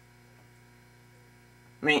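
Faint steady electrical mains hum; a man's voice starts near the end.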